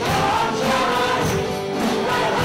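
Live worship song: several voices singing together over a band of acoustic and electric guitars and drums, with held, sustained sung notes.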